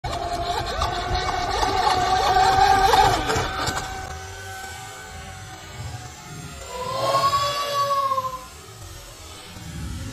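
Motors of radio-controlled speedboats whining at speed: a steady high whine for the first three seconds or so, then, about seven seconds in, a whine that rises and falls in pitch.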